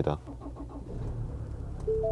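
Diesel engine of a 2023 Ford Ranger starting from the push button and settling into a steady, low idle, heard from inside the cabin. A steady tone sounds near the end.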